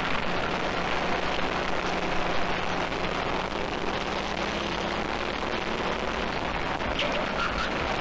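Onboard sound of a racing kart at speed: its small engine, about 9.6 horsepower, runs steadily under a heavy rush of wind noise on the kart-mounted camera's microphone.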